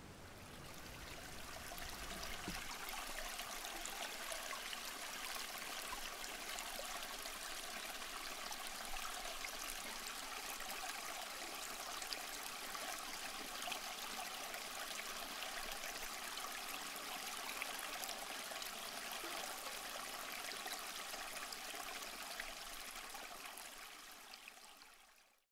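Steady rush of running water, like a stream, fading in over the first two seconds and holding even throughout.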